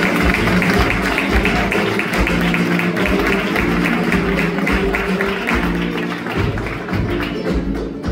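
Flamenco guitar playing bulerías, accompanied by quick, evenly spaced palmas (flamenco handclaps). The clapping drops away about two thirds of the way through while the guitar plays on.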